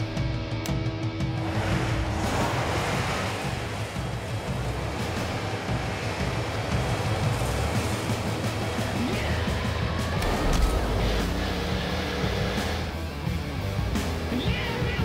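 Soundtrack music mixed over a school bus's engine running hard, with a steady rushing noise as its rear wheel spins and throws up smoke.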